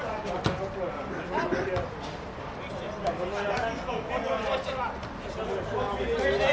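Voices calling out across an outdoor football pitch, players and spectators shouting, with a few sharp knocks, the loudest about half a second in.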